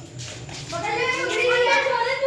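Children's voices, high-pitched talking and calling out.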